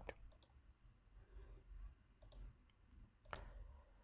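Near silence broken by a few faint computer mouse clicks, the last and loudest shortly before the slide changes.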